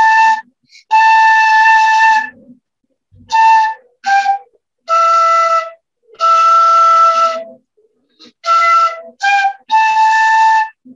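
A beginner playing a simple tune on a transverse flute, one note at a time: about nine separate held notes of different pitches with short gaps between them and a lot of breath noise in the tone, typical of a student in his second lesson on the instrument.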